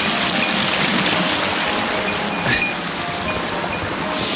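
Shallow mountain stream running over rocks: a steady rush of water, with faint bell-like ringing tones over it.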